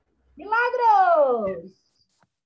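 A cat meows once: one long call that rises a little and then falls in pitch.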